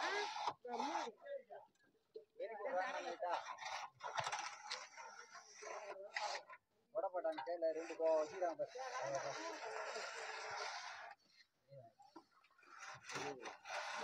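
Faint voices talking at a distance, in short broken phrases. About nine seconds in there is a soft, steady scraping sound lasting a couple of seconds.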